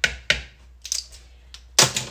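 Light clicks and taps of kitchen utensils and containers being handled while measuring ingredients into a mixing bowl: a few small ticks, then one louder knock near the end.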